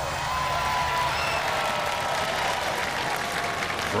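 Large studio audience applauding, a steady wash of clapping.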